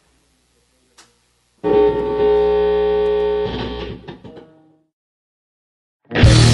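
A single electric guitar chord struck and left to ring, fading out over about three seconds, after a couple of faint clicks.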